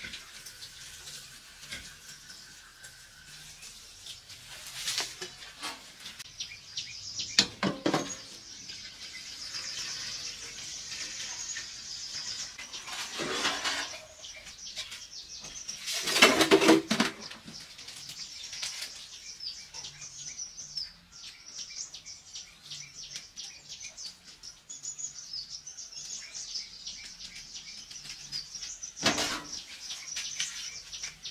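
Birds chirping steadily in the background, with a handful of louder clatters and splashes from a stainless steel pot and bowl of water being handled. The loudest clatter comes a little past halfway, and another comes near the end.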